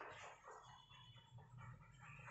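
Near silence, with faint, irregular scratching of chalk writing on a blackboard.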